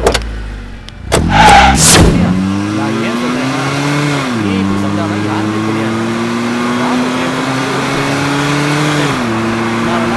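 A Tata police jeep's engine pulls away and accelerates, its pitch climbing steadily. The pitch drops sharply at two upshifts, about four seconds in and again near the end. A knock at the very start and a loud burst of noise about a second in come just before the engine note settles.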